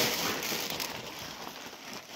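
Wheat grain pouring from a sack into a steel flour-mill hopper, a rush of falling grain that fades away as the flow runs out.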